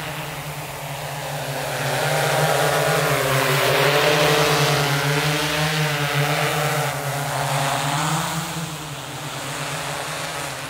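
Large multirotor drone, a Freefly Alta, flying with its propellers humming steadily and the pitch wavering as the motors adjust. The hum swells as it flies close about two seconds in, is loudest around four seconds, and fades again after about eight seconds.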